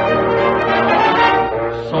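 Orchestra's brass section playing a short bugle-call fill between sung lines, several held notes sounding together. Old 1949 radio recording, dull in the highs.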